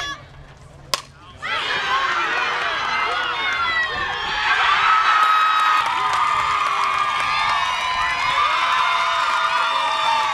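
A softball bat cracks against the ball once, about a second in, after a brief hush. Right after it, a crowd of spectators and players breaks into loud cheering and high-pitched screaming for a home run.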